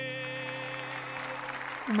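The last held note of a samba song, a man's voice with backing band, dying away during the first second and a half, with audience applause underneath.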